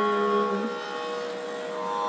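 Electronic keyboard holding a chord of steady notes. The lower notes stop about a second in while the higher ones keep sounding.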